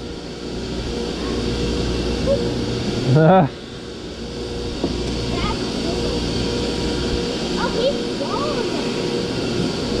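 A steady low background rumble with a faint steady hum, broken about three seconds in by one short, loud vocal exclamation.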